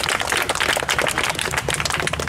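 A large crowd applauding, many hands clapping at once in a steady patter.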